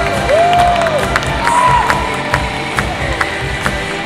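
Fast, steady drumbeat of fire knife dance music, with whooping shouts that rise and fall in pitch over crowd cheering.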